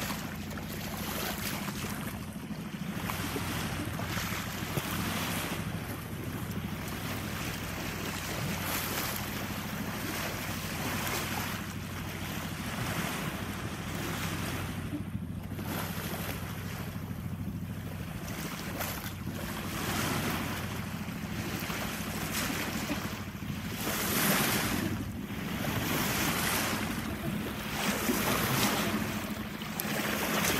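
Sea water rushing and splashing along a sailing yacht's hull at the bow while under way, with wind buffeting the microphone. The wash swells and eases and grows louder near the end, over a steady low hum.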